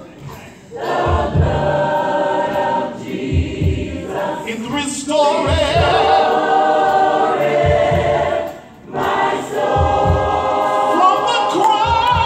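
Gospel mass choir singing with instrumental accompaniment and a low beat underneath. The singing drops away briefly just after the start and again about nine seconds in.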